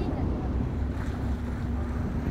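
A boat engine running at a low, steady idle, with the wash of the sea around the hull.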